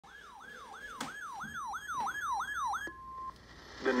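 RadioShack NOAA weather radio sounding its alert for a severe thunderstorm warning: a falling siren sweep repeating about three times a second, growing louder, then a brief steady tone just before the broadcast voice begins.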